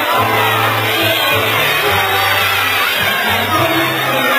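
Music with a steady bass line, notes held about a second each, playing over a crowd of adults and children talking and calling out.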